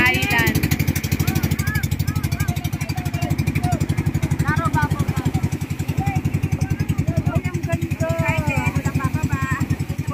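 Engine of a motorized outrigger boat (bangka) running under way with a rapid, even chugging, with people's voices over it.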